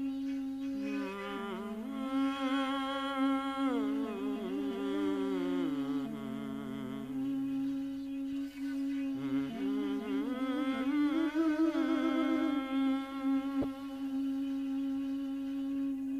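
Minangkabau sirompak-style mantra chanting: a low voice humming a slow, wavering melody that slides up and down with heavy vibrato and sinks well below a steady held drone tone underneath.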